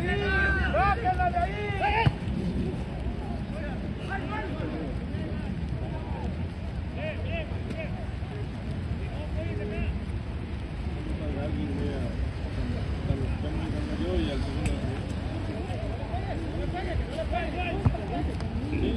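Players shouting to each other across an outdoor football pitch, loudest in the first two seconds, over a steady low rumble, with one sharp thump about two seconds in; faint scattered calls follow.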